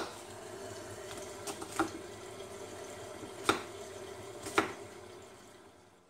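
Knife chopping an apple on a wooden cutting board: a handful of sharp knocks of the blade against the board, irregularly spaced a second or more apart, over a steady low hiss.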